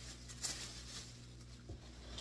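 A thin plastic shopping bag holding skeins of yarn, rustling and crinkling faintly as it is handled and lifted, with a couple of slightly sharper crinkles.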